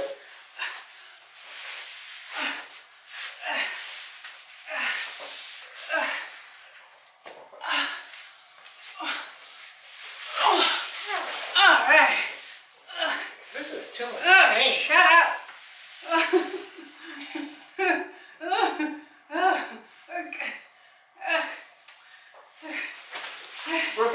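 A man's and a woman's voices in short, broken bursts while they play-wrestle: laughter, chuckles and strained effort sounds, with hardly any clear words.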